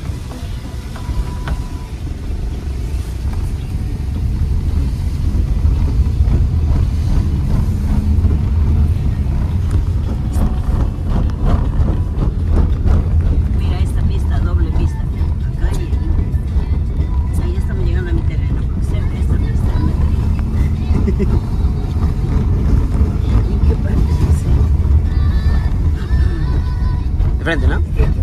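Car cabin noise while driving on a wet road: a steady low rumble of engine and tyres that grows louder over the first few seconds as the car gathers speed, then holds.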